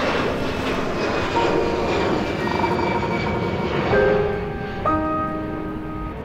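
Airport ambience of jet aircraft engines running, with a high engine whine slowly falling in pitch in the first few seconds. Music comes in with held piano chords about four seconds in.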